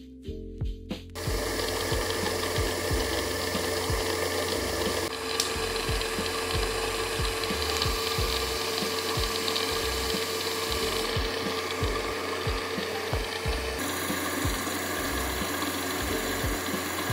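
Electrolyte spraying and splashing over the metal workpiece of a running electrochemical machining rig, a steady hiss with a steady hum underneath, starting about a second in, over background music.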